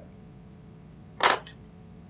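A single sharp snip of small fly-tying scissors cutting the tying thread's tag end, about a second in, followed by a faint second click.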